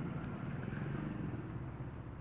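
Steady low engine rumble with an even hum, slowly fading toward the end.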